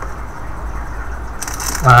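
Steady low background hum with a short rustle about a second and a half in, then a man's voice starts right at the end.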